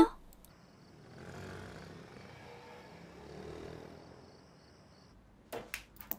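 Faint, soft murmuring of caged hens that swells and fades, then a few sharp clicks near the end.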